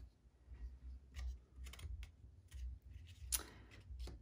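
Light clicks and scrapes of a clear ruler and a painted paper panel being shifted and set down on a cutting mat, the sharpest click a little over three seconds in. A low bass rumble from distant live music runs underneath.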